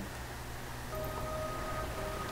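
A lull with a faint steady low hum; about halfway through, a faint steady tone is held for about a second.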